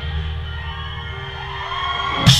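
Live rock band music in a quieter passage: held notes and chords ring on while the drums sit out.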